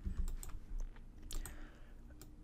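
A few scattered computer keyboard keystrokes, sharp soft taps spaced unevenly, over a faint low hum.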